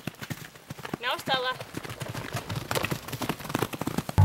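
A short, high, wavering vocal call about a second in, amid scattered light clicks and taps.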